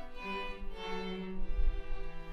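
Student string ensemble of violins and cellos playing slow sustained bowed notes, settling into a long held chord about one and a half seconds in.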